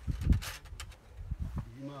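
Men talking outdoors, with a voice speaking a word near the end. There are a few brief rustling clicks about half a second in.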